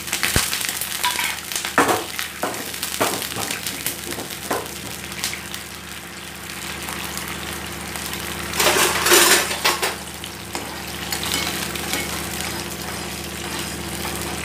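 A watery tadka with sugar boiling in a nonstick frying pan on a gas flame: steady bubbling and hissing at a rolling boil. A few sharp knocks of a metal ladle or spoon on the pan come in the first few seconds, and the bubbling and stirring grow louder for a second or so about nine seconds in.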